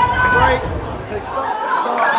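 Chatter of several voices in a large hall. A low rumble underneath drops away about one and a half seconds in.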